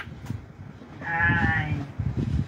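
A person's voice holding a high, wavering note for under a second, about a second in, over low background chatter.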